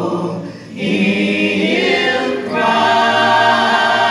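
A small gospel vocal ensemble of men and women singing unaccompanied in harmony, holding long chords. There is a brief break for breath just under a second in, then the next phrase.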